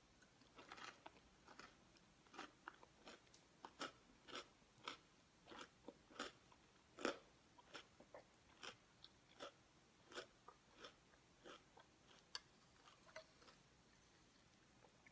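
Close-miked chewing of a mouthful of Alpha-Bits cereal in milk, crunching in short crisp bites about twice a second, the loudest crunch a little past the middle.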